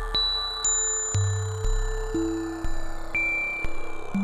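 Electronic drone music from a VCV Rack software modular synthesizer patch. Low bass tones sit under pure, held higher notes, and a new note enters about twice a second, each swelling in and then fading.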